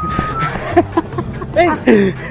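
The last note of the background music, then men's voices exclaiming and laughing with rising and falling pitch, loudest in the second half.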